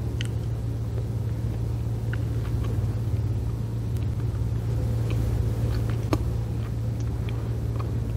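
Steady low hum of room tone, with a few faint small clicks.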